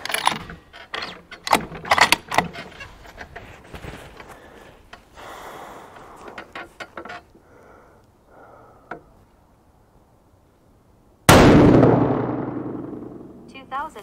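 Clicks and knocks in the first several seconds, then, well past halfway through, a single shot from a Howa 1500 bolt-action rifle in 6.5 PRC: loud and sudden, its report dying away over a couple of seconds.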